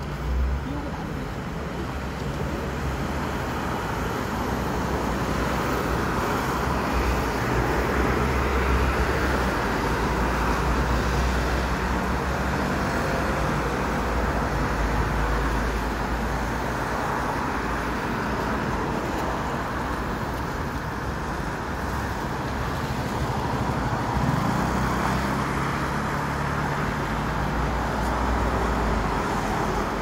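City road traffic: vehicles passing with steady tyre and engine noise and a low engine drone underneath.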